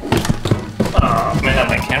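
Footsteps in sneakers going down hardwood stairs, a quick run of knocks.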